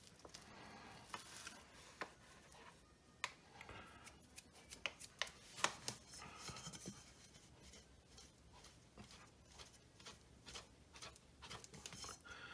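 Faint scattered taps and light rubbing from hands scattering flour over a stone countertop and handling a bowl of sticky bread dough, with a few soft scrapes about halfway through as the bowl is lifted and tipped.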